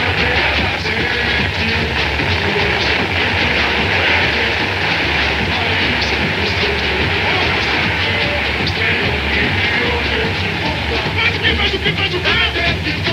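Fireworks crackling in a dense, steady stream over samba music and crowd noise, heard through an old TV broadcast's narrow soundtrack.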